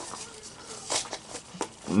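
Rustling and handling of a Pokémon card theme deck's packaging, with a couple of brief clicks, one about a second in and another shortly after.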